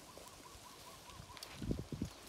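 A bird calling: a faint, quick run of evenly repeated soft notes, about six a second, that stops about a second in. Near the end come a few low, dull bumps.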